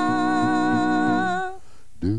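Doo-wop a cappella vocal group of a woman and four men singing a sustained hummed chord, with one higher voice wavering on top. The chord is released about a second and a half in, leaving a brief gap before the next phrase.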